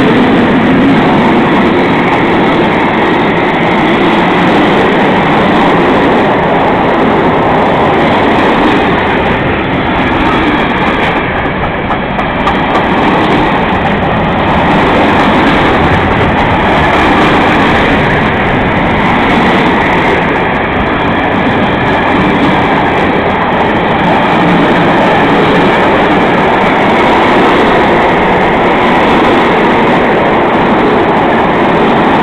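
Freight wagons rolling past at close range: a steady, loud rumble and rattle of steel wheels on the rails, easing briefly about twelve seconds in.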